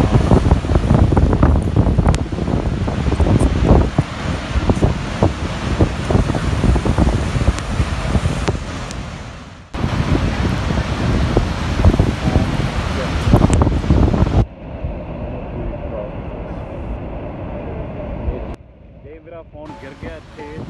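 Roar of Niagara Falls pouring over the brink, with heavy wind buffeting the microphone. The sound breaks off abruptly twice and turns to a much softer rush for the last few seconds.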